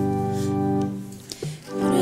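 Church organ playing a hymn tune: a held chord fades out about a second in, and after a short break the next chord comes in near the end.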